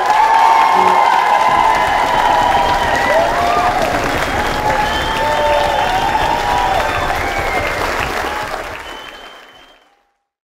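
Audience applauding, with cheering voices over the clapping. The sound fades out over about the last second and a half.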